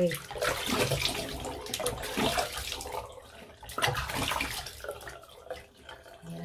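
Tap water running into a bathroom sink and splashing as a face is washed, in uneven surges that die down near the end.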